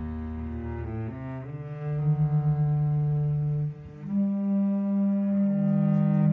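Cello and bass clarinet improvising together in long held low notes that change pitch every second or two, with a short dip just before a louder sustained note near the middle.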